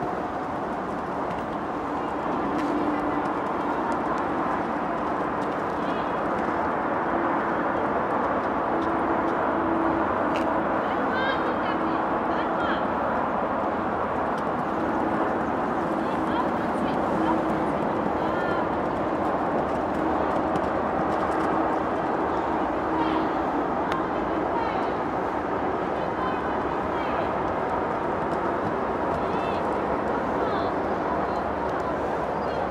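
Indistinct voices over a steady background noise.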